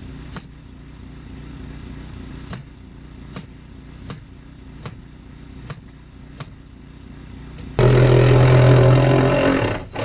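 Framing nailer firing nails into OSB sheathing, about seven sharp shots spaced under a second apart, over the steady hum of a running engine. Near the end a much louder steady noise takes over for about two seconds.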